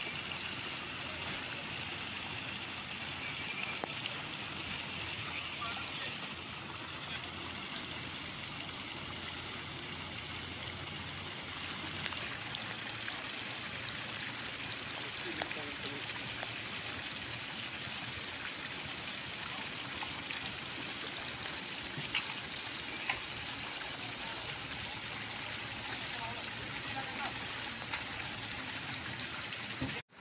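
Steady rushing of a fast-flowing river, an even noise with a few faint ticks.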